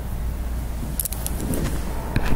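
Steady low background hum, with a few light clicks of a stylus touching a tablet screen about a second in and again near the end.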